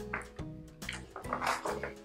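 Paper rustling in short bursts as the pages of a magazine booklet are handled and turned, over soft background music with held notes.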